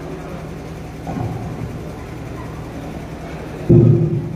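Steady low hum and room noise from a hall's PA system, with a brief faint voice-like sound about a second in. A sudden loud burst comes through the loudspeakers near the end.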